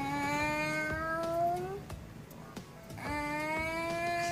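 A voice holding two long, drawn-out notes, each slowly rising in pitch. The first lasts about two seconds; the second begins about three seconds in.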